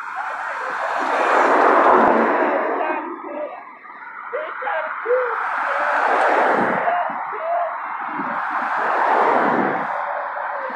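Cars passing close by on a road: three swells of tyre and engine noise that rise and fade, about two, six and nine seconds in.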